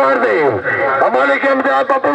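A man's loud voice over a public-address loudspeaker, talking in an unbroken stream with long rising and falling pitch.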